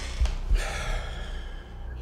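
A man's long, breathy exhalation like a gasp or sigh, starting about half a second in and fading out over a second and a half. It sits over a low steady drone, with two short low thumps near the start.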